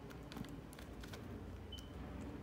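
Faint light clicks and taps from an action figure being handled and stood up on a diorama base, over a low steady hum.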